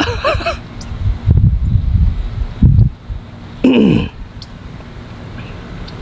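Wind buffeting the microphone in low gusts, with a short vocal exclamation from a person about halfway through.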